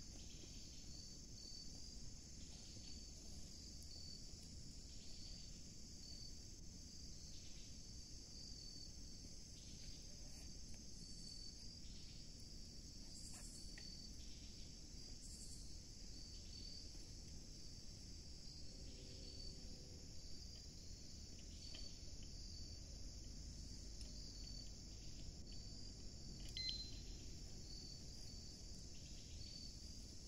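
Crickets chirping in a steady, faint, high-pitched chorus, with a low, even rush underneath and one small click near the end.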